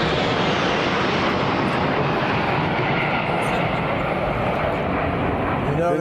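Military jets flying overhead in a formation flyover: a steady rush of engine noise.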